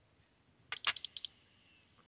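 Konquest KBP-2704A upper-arm blood pressure monitor giving three short, high beeps in quick succession, with a click at the first, as its screen shows a finished reading: the signal that the measurement is done.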